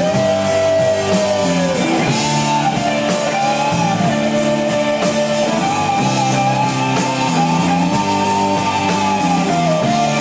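Rock band playing live in a rehearsal room: electric guitar, bass guitar and drum kit. A sustained lead melody slides up and down over a steady cymbal beat.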